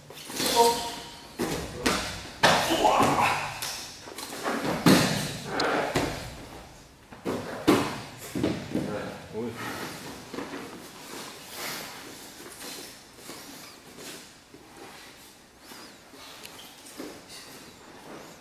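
Thuds and slams of bodies and feet on padded gym mats as a training partner is taken down in knife-defence drills. The impacts come several times in the first half, then the activity quietens.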